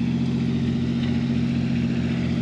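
An engine running at a steady idle: a constant low hum that holds one pitch throughout.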